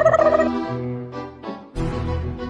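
Background music with steady notes, with a rapid warbling trill over it that ends about half a second in. The music drops out briefly near the end.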